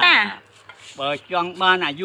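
An elderly man speaking, with a short pause about half a second in before he carries on.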